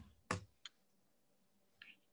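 Three short clicks, as from a computer mouse or keyboard. The first, about a third of a second in, is the loudest. Two fainter, thinner ones follow, one just after it and one near the end.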